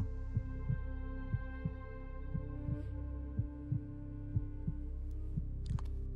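Tension underscore: a low, heartbeat-like thumping, about three beats a second, over a steady held droning chord.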